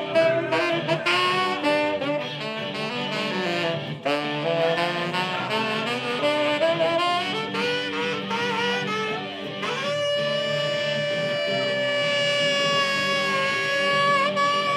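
Tenor saxophone solo over electric guitar and drums: quick runs of notes, then one long held high note from about ten seconds in, bending slightly near the end.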